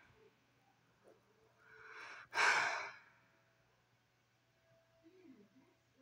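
A person sighs: a breath drawn in about a second and a half in, then let out in a sigh lasting about half a second. A faint low murmur follows near the end.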